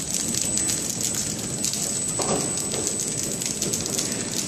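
Landpack KT 250X horizontal flow-wrap (pillow-bag) packing machine running steadily, a dense rapid clicking and rattling with a thin high whine throughout.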